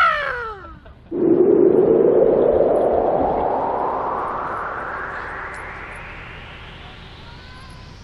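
A voice calls a falling "ahh" in the first second. Then, about a second in, an edited-in whoosh sound effect starts loud and rises steadily in pitch while fading away over about seven seconds.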